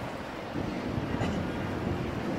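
Steady low background rumble of a crowded hall, with no voice.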